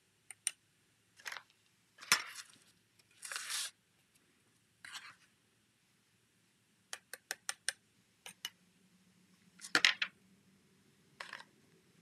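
Plastic spoon scooping and tapping in a plastic tub of white embossing powder, with scattered light clicks and brief rustles as powder is sprinkled over a stamped paper strip. A run of about five quick taps comes about seven seconds in, and a louder clatter near the end.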